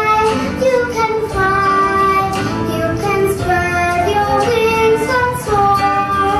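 A young girl singing solo, a musical-theatre song with notes held and gliding from one pitch to the next.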